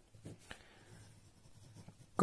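Faint scratching of a ballpoint pen writing on ruled notebook paper, with two light ticks in the first second.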